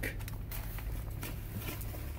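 Faint rummaging while searching for an ink cake: scattered soft taps and small clicks of things being handled and moved, over a steady low hum inside a car's cabin.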